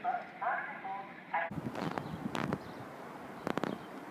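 A tinny, muffled voice, typical of a station loudspeaker announcement, that cuts off abruptly about a second and a half in. After that come a few irregular clicks and knocks.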